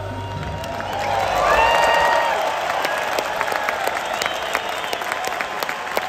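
A large arena crowd applauding and cheering, with piercing whistles, as the band's last sustained note dies away in the first second or so. The cheering swells and is loudest about two seconds in, then settles into steady clapping.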